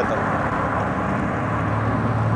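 City street traffic and riding noise heard from a moving electric scooter: a steady rush with a low vehicle hum that grows stronger after about a second.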